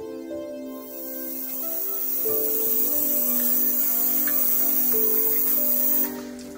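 Background music with soft, sustained notes. Over it, a loud, steady hiss of tap water running into a metal lab sink starts about a second in and cuts off suddenly at the end.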